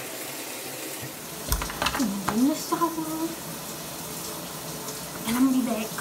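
Water running steadily from a bathroom tap, an even rushing hiss, with a low thump about one and a half seconds in.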